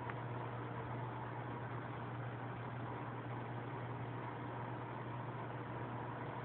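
Aquarium pump running, a steady low hum with an even hiss over it.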